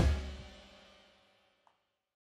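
Punk rock song ending: the last chord and cymbals ring on and fade out over about a second.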